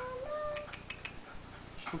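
A person's high, drawn-out sing-song baby talk to a pet rabbit trails off in the first moments. After that there is only a low steady hum and a few faint soft clicks.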